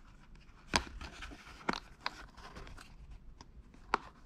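Three small sharp clicks with faint rustling between them, the last click the loudest: hands pressing a small metal push-on retaining clip over a post on a plastic shift-boot trim panel and handling the leather boot.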